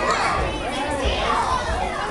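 Hubbub of many young children talking and calling over one another.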